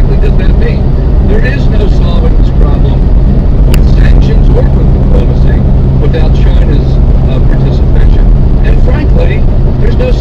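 Vehicle engine and road noise heard from inside the cabin: a loud, steady low drone at constant speed, with indistinct voices over it.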